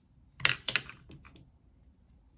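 A quick run of clicks and rustles about half a second in, then a few fainter ones, as a foam flexirod roller is unwound and pulled out of hair.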